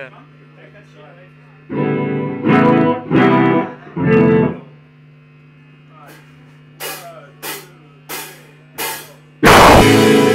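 Distorted electric guitar through an amp, struck in four loud chords over a steady amp hum. Four evenly spaced sharp clicks count in, and the full punk band starts playing loudly near the end.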